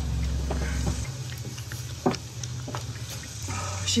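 Soft rustling as a shorn, heavily matted sheep fleece is handled and lifted, with one sharp knock about two seconds in. Under it runs a steady low hum that drops to a lower pitch about a second in.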